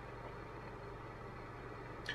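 Faint steady low hum of room tone, with no other event.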